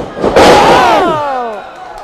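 A wrestler's tackle slamming bodies into the ring with a sharp crash about a third of a second in. The crowd's loud 'ooh' follows at once, falling in pitch and fading within a second.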